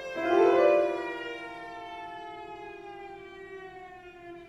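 Cello and piano playing contemporary classical music. A loud attack comes just after the start; then a sustained note slides slowly downward in pitch over a steady lower note, fading as it goes.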